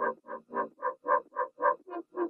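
Instrumental passage of an R&B track with no vocals: a pitched sound pulsing evenly about four times a second, at a low level.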